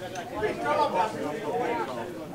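Indistinct chatter of voices talking, with no single clear speaker.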